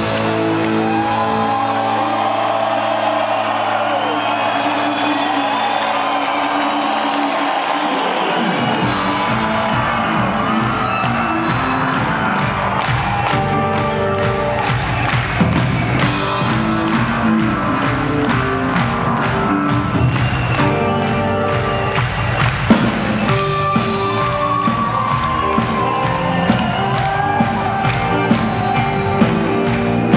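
Live rock band in a concert hall: held guitar chords with audience cheering and whoops, then drums and bass come in about nine seconds in and the full band plays a steady beat.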